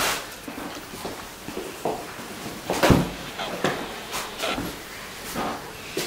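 A few scattered knocks and clicks from people moving about a small room, the loudest a thud about three seconds in.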